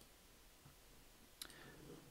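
Near silence, broken by a single faint click about a second and a half in: a computer mouse button being clicked while a software slider is set.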